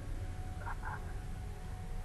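A steady low hum fills a pause in the talk. Two short calls, about a quarter second apart, come just under a second in.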